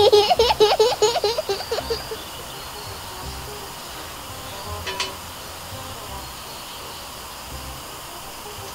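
A young girl giggling in quick bursts for about two seconds, then low room sound with a single sharp click about halfway through.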